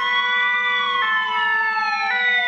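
Emergency vehicle sirens: a wail that slowly rises and then falls, layered with a two-tone siren switching pitch about once a second.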